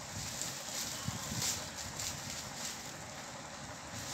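Clear plastic bag crinkling as a small child handles it, with several short rustles in the first couple of seconds over a steady background hiss.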